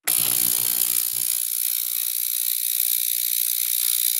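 A small generic ultrasonic cleaner, its metal tank filled with clean water, switched on and running: a steady, high, harsh buzz that is not a pleasant sound. A lower hum underneath fades out about a second and a half in.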